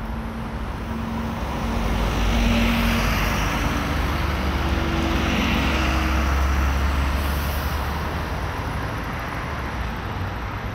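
City road traffic passing close by, with a vehicle engine's low drone that swells from about two seconds in and fades after about seven seconds.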